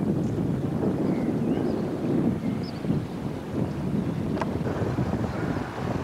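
Wind buffeting a camcorder's built-in microphone high on an open tower: a steady low rush, with a single click a little after four seconds in.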